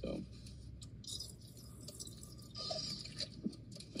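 Quiet drinking sounds: sips and swallows from a squeeze sports bottle and a drink sucked through a straw, coming in a few short, soft bursts.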